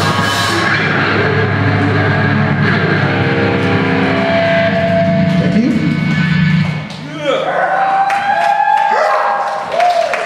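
Live metal band playing sustained, heavily distorted electric guitar chords over bass, ringing out and stopping about seven seconds in, then a voice calling out with gliding pitch over the room.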